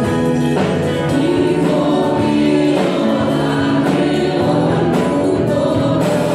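A congregation and worship group singing a Spanish-language hymn together, accompanied by strummed small string instruments and a guitar.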